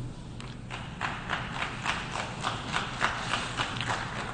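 Sparse applause: a few people clapping, with the single claps distinct and coming irregularly, several a second.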